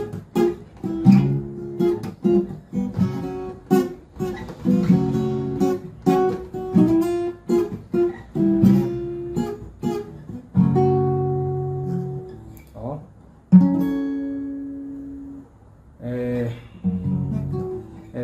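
Takamine steel-string acoustic guitar strummed down and up in a rhythmic pattern through a chord progression. About two-thirds of the way in, a single chord is struck and left to ring out and fade for about two seconds, and then the strumming resumes.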